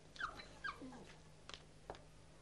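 A dog whimpering faintly: a few short, high whines that fall in pitch, in the first second or so. Two soft clicks follow near the end.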